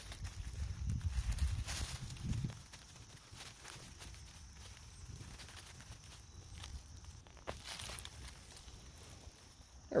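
Dry leaf litter rustling and soil crackling as a hand digs around and pulls up a wild garlic plant from the forest floor, with low rumbling for the first two and a half seconds, then quieter scattered crackles.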